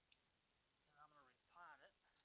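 One sharp snip of scissors cutting through a leaf stem of a Pereskia cactus, just after the start. Faint mumbled speech follows in the second half.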